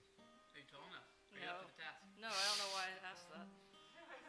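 Guitar strings plucked and left ringing while the guitar is tuned, under off-mic talking that is loudest a little past halfway.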